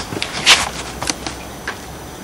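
Handling noise from the airsoft rifle and its mounted flashlight: a short rustle about half a second in, then a few faint clicks.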